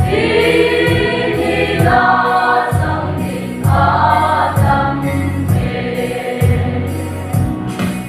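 Mixed choir of women and men singing a gospel song in unison through microphones, over a sustained low accompaniment that changes note every half second or so.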